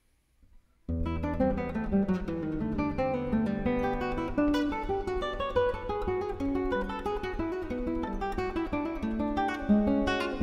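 Classical guitar played fingerstyle solo: a fast toccata of rapid plucked notes over a ringing low bass note. It begins suddenly about a second in, after near silence.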